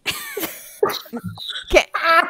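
Several people laughing hard over a video call, in irregular breathy bursts with a few sharp gasps.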